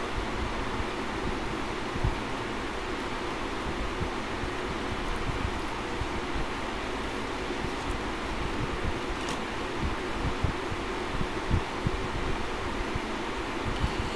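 Steady air noise from a running room fan, with a fluctuating low rumble of air buffeting the microphone.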